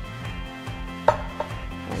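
A chef's knife forcing its way through the tough skin of a sugar pie pumpkin: a sharp crack about a second in and a smaller one just after, as the blade breaks through the rind. Background music plays underneath.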